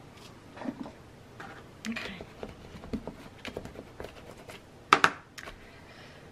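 Hands handling cardstock and paper on a craft table: scattered light taps, clicks and rustles, with a sharper snap about five seconds in.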